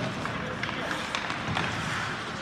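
Indoor ice rink during a hockey game: a steady noisy wash of skates on the ice, a few short clicks of sticks, and spectators talking.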